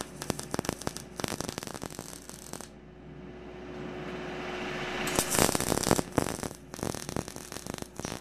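MIG welding arc crackling as it lays beads on steel stair-rail bars, in two runs. The arc stops for about two and a half seconds in the middle, leaving a steady low hum, then strikes again.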